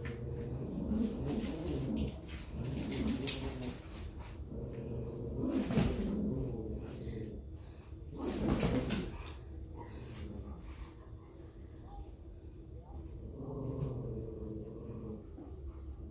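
Two dogs, a small dog and a husky-type dog, play-fighting over a stuffed toy monkey: dog vocalizations come in bursts, with two louder, sharper sounds about six and nine seconds in.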